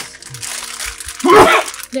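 Crinkling of a plastic Sour Patch Kids candy bag being pulled open. A short burst of laughter comes about a second and a half in, over soft background music.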